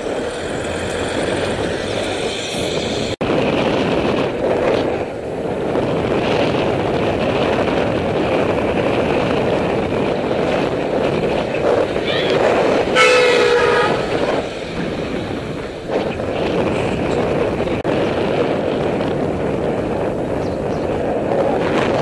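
Steady wind rush and road noise on a moving bicycle's camera microphone. A motor vehicle's horn sounds once, briefly, about thirteen seconds in.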